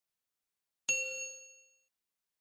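A single bright chime ding, the bell sound effect of an animated subscribe button as the notification bell is clicked. It starts suddenly about a second in and rings out, fading within about a second.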